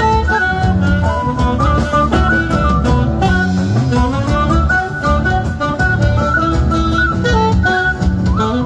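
Live band music played loud through a stage sound system: saxophone, guitar and drum kit, with a steady beat under a stepping melody.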